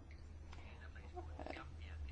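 A pause in the talk: faint, indistinct speech over a steady low hum.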